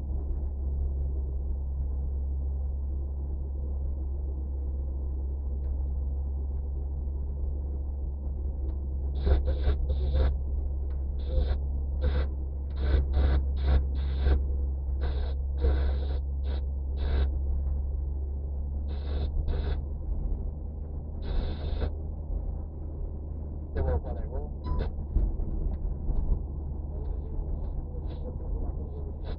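Steady low rumble of a car's engine and tyres heard from inside the cabin while driving. Through the middle stretch a run of short, irregular, sharper sounds comes on top of it.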